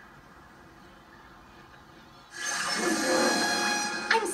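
Cartoon magic sound effect heard through a TV speaker: faint hiss, then a loud shimmering whoosh starts suddenly about two seconds in, as the statue's portal opens and Twilight comes through.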